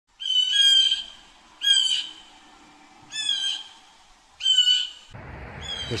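A bird calling four times in an even series, each call short and loud, with a fifth call starting near the end.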